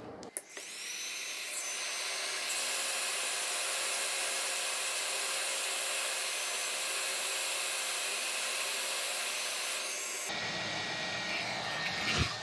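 Hot-air rework gun blowing a steady hiss of air with a faint steady whine, heating a small capacitor on a laptop motherboard to desolder it; the capacitor is suspected of shorting the main power rail. The airflow switches on just after the start and cuts off about two seconds before the end.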